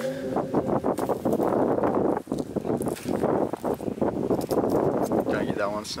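Footsteps and rustling through dry grass and leaf litter, a dense run of crunches and brushing sounds.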